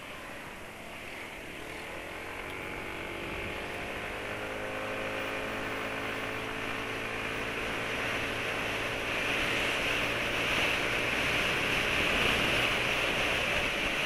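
Wind and road noise from a Yamaha scooter being ridden, growing steadily louder as it gathers speed.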